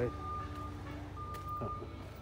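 An electronic beeper sounding a repeating high beep, each beep about two-thirds of a second long with short gaps between, over a low steady hum.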